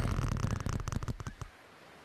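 A taut rope creaking under strain: a dense run of rapid crackling clicks over a low rumble, fading out about a second and a half in.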